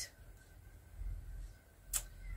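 Metal knitting needles clicking softly during knitting, with one sharper click near the end, over a faint low hum.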